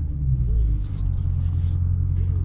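Dodge Charger Scat Pack's 6.4-litre HEMI V8 running at idle, a steady low rumble heard from inside the cabin.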